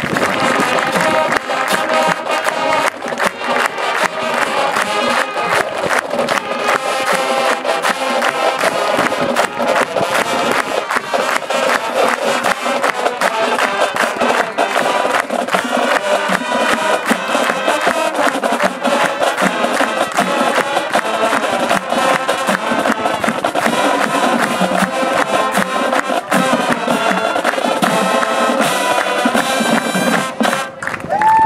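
High school marching band playing brass and drums together, with a steady drum beat under held brass chords. Some crowd cheering mixes in.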